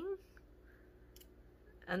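A couple of faint clicks of a metal fork and knife on a plate over quiet room tone, with a voice trailing off at the start and speech starting again near the end.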